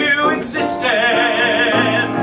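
Live musical-theatre number: piano accompaniment with a singer holding one long high note with vibrato through the second half.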